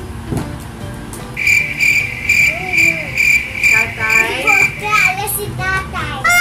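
Cricket chirping sound effect, a steady chirp about three times a second, edited in as the 'crickets' gag for a blank, awkward pause after a question the child can't answer. A child's voice and giggles are faintly underneath.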